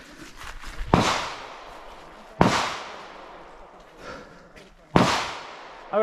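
Three pistol shots: one about a second in, one about a second and a half later, and one about two and a half seconds after that, each with a short echo dying away.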